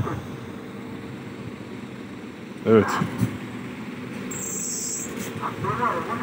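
Low steady hum of vehicle engines running in stalled traffic on a snow-covered road, with a brief high hiss about four seconds in.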